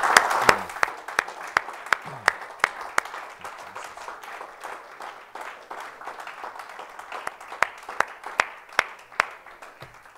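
Congregation applauding: a burst of applause that thins within about a second into a few people's steady rhythmic clapping, about three claps a second, fading slowly.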